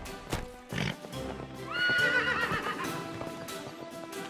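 A young horse's whinny, a high wavering call about two seconds in, after a couple of hoof clops, over background music.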